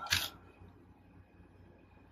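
A brief plastic click from the Transformers figure's parts being handled, a quarter of a second in, then near quiet.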